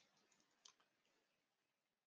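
Near silence with a few faint, sharp clicks at a computer: one right at the start and another about two-thirds of a second in.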